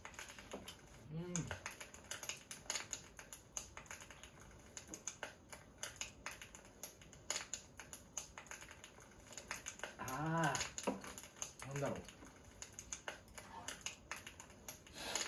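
Soft, dense crackling and clicking, like a log fire, from a fireplace video playing on a tablet. About a second in a man gives a short hum, and around ten seconds in, just after a swallow of beer, a longer voiced 'ahh', the loudest sound here.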